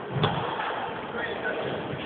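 Badminton racket striking the shuttlecock once, a sharp smack about a quarter of a second in, over steady background din with faint voices.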